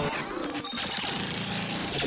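A produced talk-radio sound drop: a loud, dense, steady mix of music and noisy sound effects.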